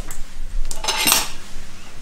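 Light clatter and a few small clicks of hard objects being handled on a stone kitchen countertop as small battery lights are set inside carved pumpkins.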